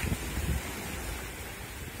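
Small sea waves washing at the shoreline, with wind buffeting the microphone during the first half second.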